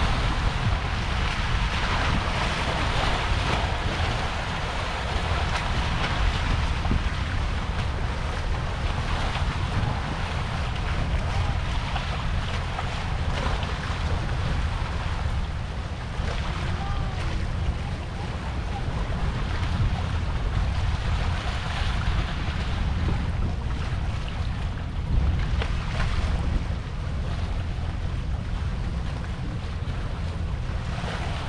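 Wind buffeting the microphone in a steady low rumble, over seawater washing against the rock breakwater.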